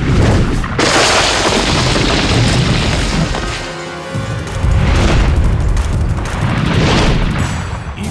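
Cinematic fight-scene sound effects over a dramatic background score: a long burst of noise about a second in, then two booming swells near five and seven seconds.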